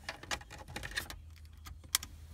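Small clicks and rattles of a USB flash drive being handled and pushed into the front USB port of a Pioneer car stereo, with one sharp click near the end.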